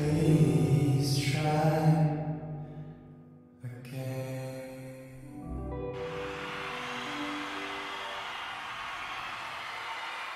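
Live concert music heard from the audience in an arena: the song's closing sung and played notes fade over the first few seconds, then quieter held notes continue, with a steady rush of sound joining them from about six seconds in.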